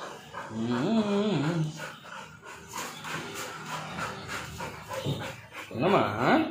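Black Labrador puppy panting and snuffling close by, with a short whine about a second in.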